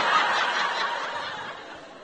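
Live comedy audience laughing, the crowd's laughter loudest at first and dying away over the two seconds.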